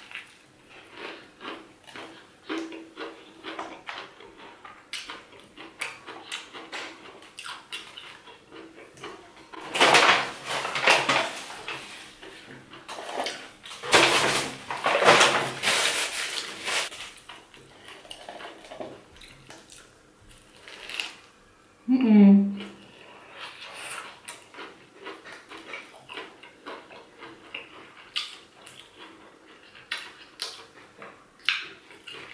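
Close-up chewing of a crispy fried chicken burger: a steady stream of small crunching clicks as it is bitten and eaten. Paper napkin crinkles loudly around the middle, and near the end a short hum slides down in pitch.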